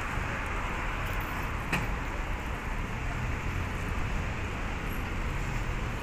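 Street ambience: steady road-traffic noise, with one brief click a little under two seconds in.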